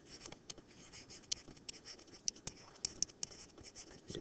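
Stylus writing on a tablet surface: faint, irregular quick taps and short scratches of handwritten pen strokes.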